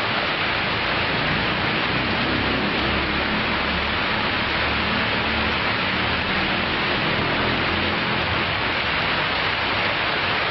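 Water from small artificial rock-grotto waterfalls pouring and splashing: a steady, even rushing.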